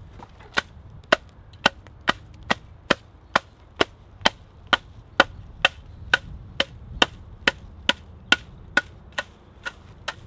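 A flat wooden thatching bat (leggett) striking the butt ends of water-reed thatch at the eaves, dressing them into line. The knocks come in a steady, even rhythm of about two a second.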